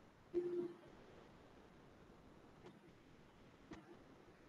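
A short, low hum from a man's voice about half a second in, followed by two faint clicks later on.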